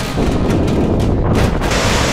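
Wind buffeting the microphone on a moving bicycle, loud and unsteady. Near the end it gives way to the steady rush of water pouring over a small concrete weir.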